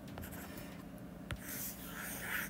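Stylus tip on a tablet's glass screen while handwriting: a sharp tap about a second in, then a short scratchy stroke near the end, faint.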